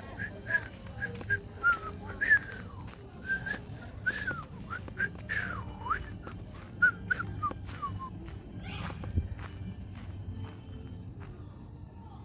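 A person whistling a run of short, sliding high notes, about two a second, that stop about two-thirds of the way through, over soft footsteps on a path.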